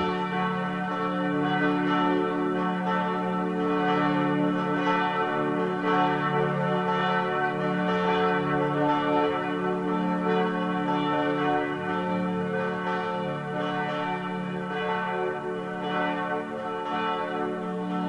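Church bells ringing continuously with a dense, sustained tone, rung as the call to the Angelus prayer.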